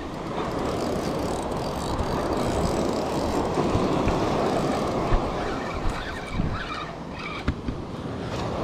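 Steady rushing noise of surf and wind on the microphone at the water's edge, with a few light knocks in the last few seconds.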